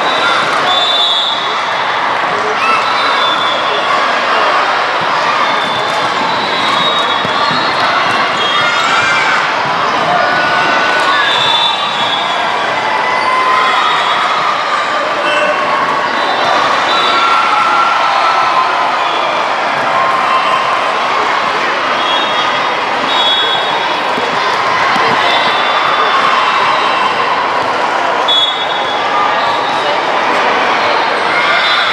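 Loud, steady din of a crowded indoor volleyball gym: many voices shouting and cheering at once, with balls bouncing on the hardwood floor.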